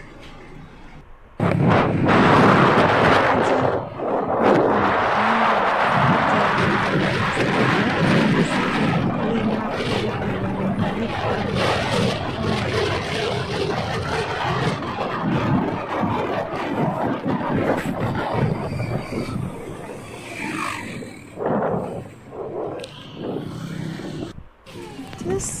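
Loud wind rushing over the microphone of a camera riding on a moving motorcycle, starting suddenly about a second and a half in. A low steady hum of engine and road noise runs underneath.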